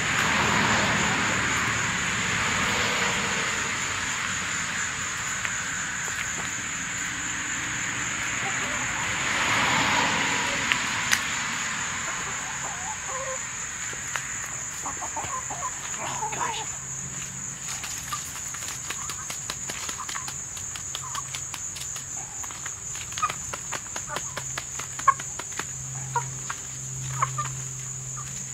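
Hens pecking at pieces of yellow jacket nest comb on asphalt: many quick, sharp beak taps with short clucks, busier in the second half. A rushing noise swells and fades twice in the first ten seconds, and a steady high whine runs underneath.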